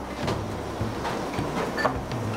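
Steady background noise with a low hum, a few faint short sounds and a brief thin tone near the end.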